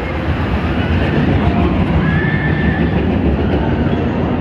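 Gerstlauer spinning coaster car rolling along its steel track, a loud steady rumble of wheels on rail that swells about a third of a second in.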